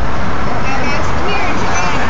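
Loud, steady street and traffic noise with indistinct voices in it.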